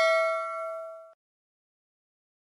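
Bell-chime 'ding' sound effect of a YouTube subscribe and notification-bell animation: several steady tones ring out and fade, then cut off abruptly about a second in.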